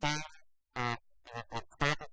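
Speech only: a man talking in a panel discussion, amplified through a headset microphone.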